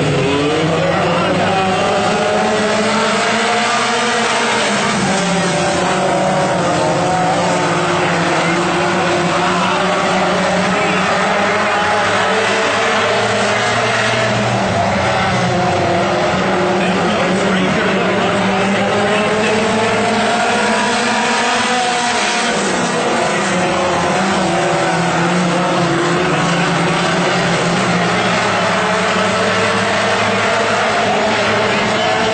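WISSOTA Mod 4 four-cylinder dirt-track race cars running at racing speed, their engine note rising and falling in long sweeps as the cars go down the straights and through the turns.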